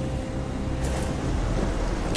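Steady drone of an aircraft in flight, with wind rushing in through an open cabin door. Two short clicks come about a second in.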